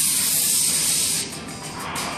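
Model rocket motor firing at liftoff: a loud, even hiss that stops abruptly a little over a second in, heard through a room's loudspeakers over background music.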